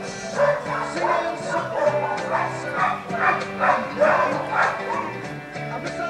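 A dog barking repeatedly, about twice a second, over background music with held notes.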